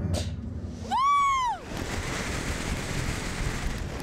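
Wind rushing over the microphone as a slingshot ride's capsule is flung upward. About a second in a rider lets out one short scream that rises and falls.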